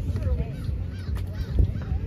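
Gusty wind buffeting the microphone, a heavy uneven rumble, with faint distant calls over it.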